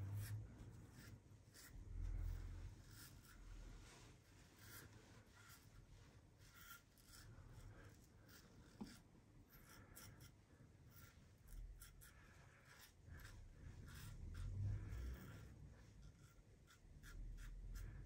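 Faint, quick scraping strokes of a 1950 Gillette Rocket Flare double-edge safety razor with a Gillette Stainless blade, cutting through lather and stubble, many short irregular strokes. A few soft low bumps come in between.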